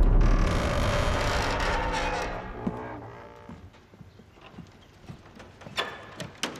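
A deep boom with a long ringing tail that fades away over about three seconds, like a drum-hit transition sting, followed by a few faint knocks.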